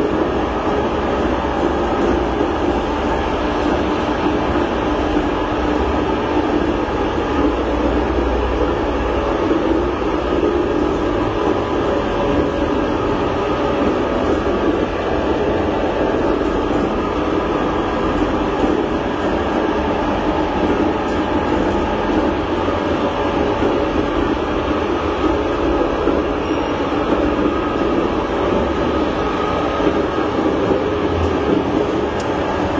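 Newly built mechanical power press running on its first start: the electric motor drives the big flywheel through V-belts with a loud, steady rumble and whir.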